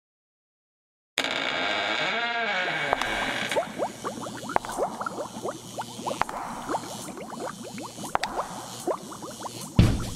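Spooky sound-effect intro: a sudden creaking, wavering tone about a second in, then steady bubbling and gurgling like a boiling cauldron, many quick rising plops.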